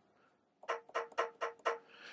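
A pitched percussion sample played from an Akai MPC Touch's drum pads: about seven quick hits in just over a second, all on the same note.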